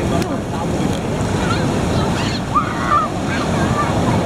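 Ocean surf washing and churning through the shallows, with waves breaking beyond, a steady dense rush of water.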